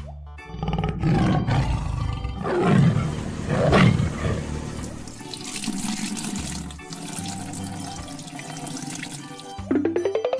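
Tiger roar sound effects, loudest twice between about two and four seconds in, then a steady rushing of liquid pouring from a hose, over children's background music; a rising boing starts right at the end.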